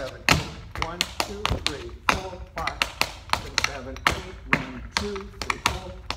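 Metal taps on tap shoes striking a wooden tap board in quick, uneven strokes, several a second: back flaps, steps and shuffles of a Shim Sham break. A man's voice sounds along with the taps.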